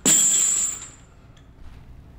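Heavy steel chains hung around the neck clinking and rattling as he steps into a lunge, in a short loud burst lasting under a second.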